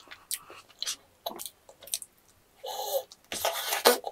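Close-miked eating sounds of chewy yakgwa with vanilla ice cream: scattered wet mouth clicks and smacks, then two louder breathy bursts in the second half, the last the loudest.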